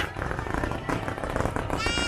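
Fireworks crackling in dense rapid pops over a low rumble. A wavering pitched sound, likely the show's accompanying music, drops out at the start and comes back near the end.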